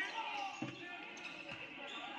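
A basketball dribbled on a hardwood gym floor, with a low bounce about half a second in and a fainter one about a second later, over background voices in the gym.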